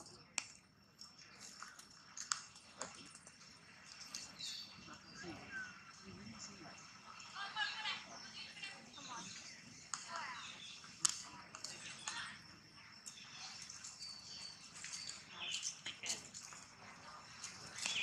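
Faint, intermittent voices of people talking in the background.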